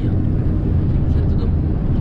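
Heavy truck cruising on the highway, heard from inside the cab: a steady, loud low drone of the diesel engine and road noise.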